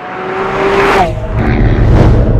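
Fly-by sound effect in a video intro: a loud rising rush with a tone that drops in pitch about a second in, like a vehicle passing. A deep low rumble follows.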